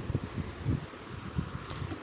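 Uneven low rumble of noise on the microphone, with a few soft swells.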